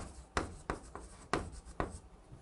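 Chalk writing on a chalkboard: a quick series of sharp taps and short scrapes as each stroke of Korean handwriting goes down, about six strokes in two seconds.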